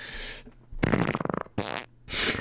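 A comic fart sound: a short hiss, then a buzzing rasp of under a second, ending with a brief burst of noise.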